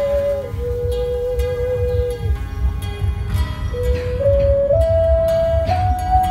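A flute plays a slow melody of long held notes. The line dips to a lower note and holds, pauses briefly, then climbs note by note. A low, uneven hum runs underneath.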